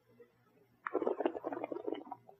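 Wet mouth sounds of a sip of red wine being swished and slurped around the mouth: a quick, irregular run of small squelches starting about a second in.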